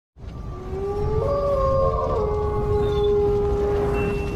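Synthesized intro sound effect: a few sustained tones over a steady low rumble. The lowest tone slides up and steps in pitch during the first two seconds, then settles on one long held note.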